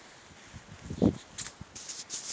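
Phone handling noise: one muffled low thump about halfway through, then light rustling as the phone is swung about.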